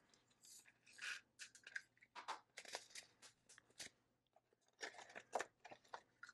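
Faint, irregular clicks, rattles and rustles of small clear plastic storage containers of diamond-painting drills and their bags being handled, with a cluster of sharp clicks through the middle.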